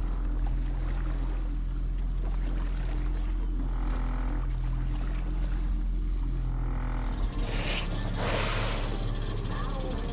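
Boat engine running steadily with a low hum, with indistinct voices and a short rush of noise about eight seconds in.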